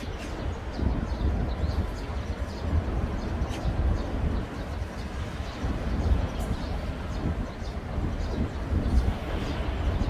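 Wind rumbling on the microphone over the rush of shallow stream water, with a few faint ticks.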